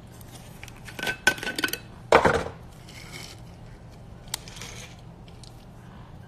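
Handling of a cardboard box and a glass jar of placenta capsules: a run of small clicks and clinks about a second in, a louder rattle just after two seconds, and one sharp click a little past four seconds.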